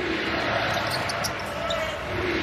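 Basketball being dribbled on a hardwood court over steady arena background noise.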